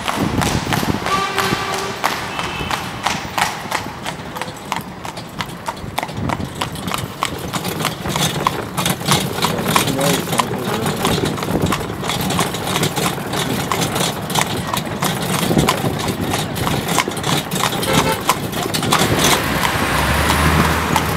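Horse pulling a carriage, its shod hooves clip-clopping on paving stones throughout.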